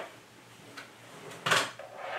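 A single short knock, like an object set down or moved on a table, about one and a half seconds in, over quiet room tone.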